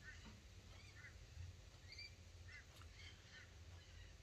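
Near silence: quiet room tone with a low hum, broken by a few faint, brief high chirps scattered through.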